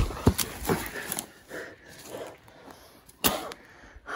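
A few sharp thuds, one just after the start and a louder one near the end, with faint scuffling on the forest floor between them during a struggle.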